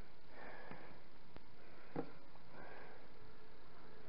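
A person sniffing faintly a few times at a scented bath pearl to identify its smell, with a small click about halfway through.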